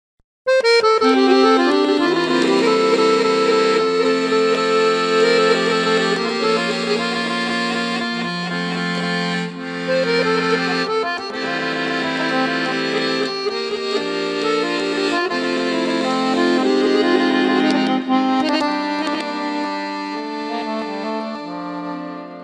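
Accordion playing the instrumental introduction to a Bulgarian folk song, with held chords under a moving melody; it starts suddenly about half a second in and eases off near the end, just before the voice comes in.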